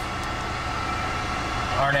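Steady hum and hiss of the business jet's cockpit background, with a faint steady high tone, in a pause between spoken words; speech resumes near the end.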